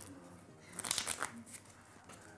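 A new deck of playing cards being handled in the hands: a quick run of crisp card clicks about a second in.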